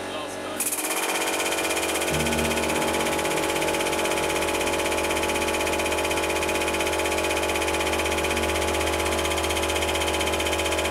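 Hydraulic press's pump motor starting up about half a second in and running steadily with a whine, a deeper hum joining about two seconds in, as the ram squeezes a wet sponge.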